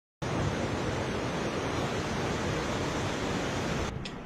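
A fast-flowing, silt-laden mountain river rushing steadily. The sound cuts off suddenly near the end.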